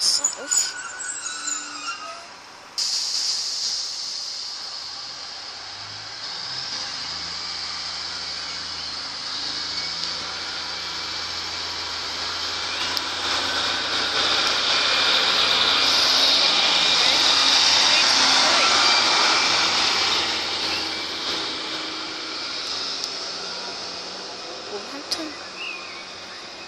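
A British Rail Class 153 diesel multiple unit pulling away from a station. Its Cummins diesel engine note climbs as it accelerates and is loudest as the unit passes close by past the middle, with a steady rush of wheel and rail noise, then it fades as the train leaves.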